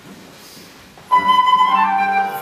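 Concert flute entering about a second in with a sustained high note, then moving on to further notes. Before it comes only the fading echo of the last sung phrase in the church.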